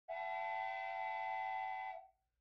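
Cartoon steam-locomotive whistle sound effect: one long steady blast of several blended tones, starting just after the beginning and cutting off at the end.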